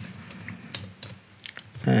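Computer keyboard typing: a handful of separate keystrokes, irregularly spaced, as a line of code is entered.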